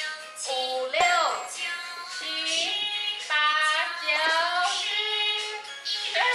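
A high, childlike voice singing a children's song over music, in held notes that step up and down in a tune.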